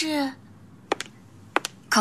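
A few footsteps of hard-soled shoes on a hard floor, each step a sharp double click, after a woman's short spoken question at the start.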